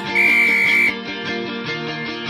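Guitar-led background music, with a loud, high electronic interval-timer beep lasting under a second just after the start, marking the end of the rest countdown and the start of the next work interval.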